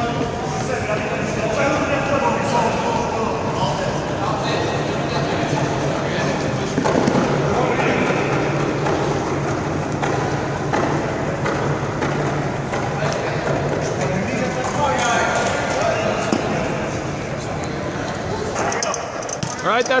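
Many voices calling and talking over each other in a sports hall, with a basketball bouncing on the gym floor now and then.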